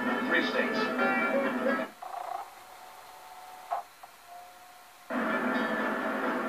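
Music from a film soundtrack played back from a Betamax hi-fi videotape. About two seconds in it drops to a quiet passage with a few faint held tones and one short sharp sound, and it comes back full about five seconds in.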